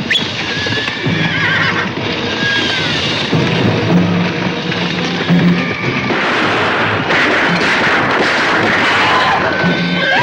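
Horses neighing and hooves galloping, with film score music under them. The clatter thickens and grows louder about six seconds in.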